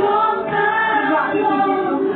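A group of women singing a worship song together through microphones and a PA, in long held notes that glide from one pitch to the next.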